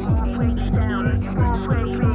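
UK hardcore dance music from a DJ mix: a fast kick drum, about four kicks a second, each dropping in pitch, over a steady held synth tone.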